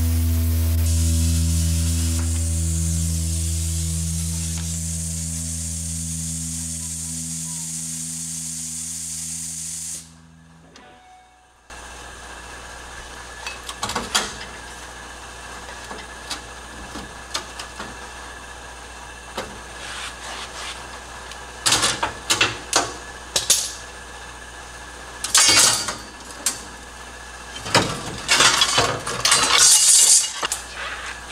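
Plasma cutter hissing steadily as it cuts through a steel truck frame rail, over a low steady hum, fading and stopping abruptly about ten seconds in. After a short gap come scattered clanks and knocks of the cut frame metal being handled.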